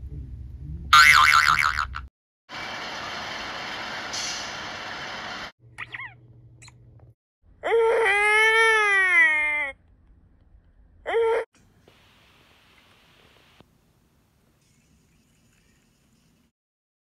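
A string of short cartoon sound effects. A springy boing comes about a second in, then a few seconds of steady hiss and quick falling whistles. A two-second pitched call rises then falls about eight seconds in, followed by a short blip and a faint hiss, and the last seconds are near silence.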